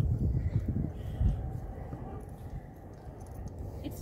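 Wind buffeting a phone microphone in uneven gusts, a low rumble with irregular thumps.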